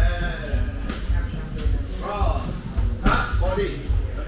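Muay Thai strikes landing on gloves and shin guards in sparring: two sharp impacts, about a second in and again about three seconds in, over background music with a pulsing bass and a voice.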